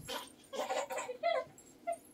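A baby makes a few short, high-pitched vocal sounds: one about half a second in, another around one second, and a brief one near the end.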